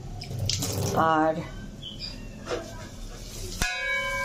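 Metal cookware struck once near the end, a sharp clink followed by a ringing tone that hangs on, over quiet kitchen background.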